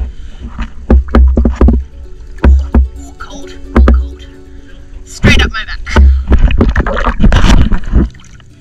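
Water splashing and slapping against a half-submerged camera as a wetsuited diver wades in, with heavy low thuds each time the water hits the housing. It comes in several short bursts, busiest in the last three seconds.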